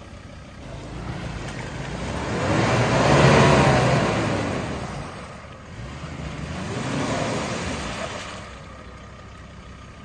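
Mazda BT-50 ute's engine revved hard twice while bogged in a mud hole, pitch climbing and falling each time; the first rev is longer and louder, the second shorter, with the ute not getting out.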